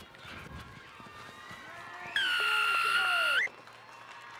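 Referee's whistle: one long, loud, steady blast of over a second, starting about two seconds in and ending with a slight upward flick, the signal that a try is awarded. Players' shouts can be heard faintly around it.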